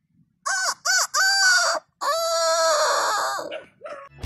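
A young man imitating a rooster's crow through cupped hands: three short rising-and-falling notes, then one long held note that trails off.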